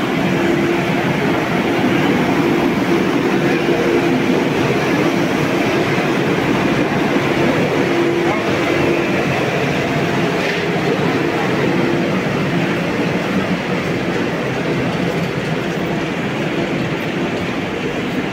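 Vande Bharat Express electric train set standing at the platform, its on-board equipment giving off a steady hum with a constant mid-pitched tone, over a background of voices.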